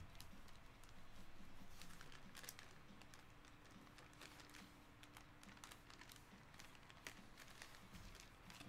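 Near silence with faint, scattered ticks and crinkles of a zip-top plastic bag being handled.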